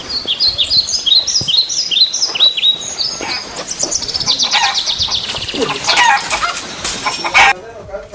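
Birds calling: a run of short, high, falling chirps, about two or three a second, then faster chattering calls from about halfway until just before the end.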